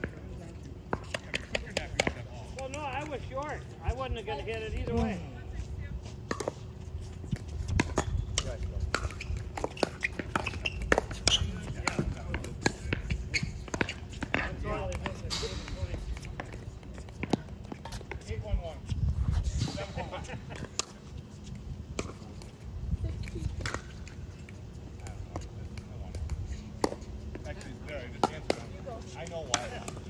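Pickleball rally: paddles striking the plastic ball in a run of sharp, irregular pops, with the ball bouncing on the hard court.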